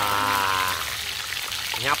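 Whole cá he (barb) fish deep-frying in a pan of hot oil, sizzling steadily with small crackles and pops, under a drawn-out spoken 'wow' in the first part and a word near the end.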